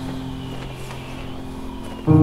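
Background piano music: a held chord slowly fading out under a steady rushing noise.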